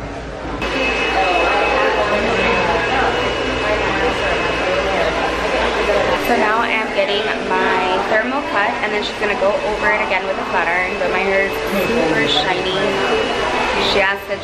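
Background chatter of several voices over a steady hiss and a thin high whine, starting abruptly about half a second in.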